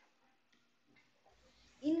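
Near silence with a few faint, short clicks, then a voice starts speaking just before the end.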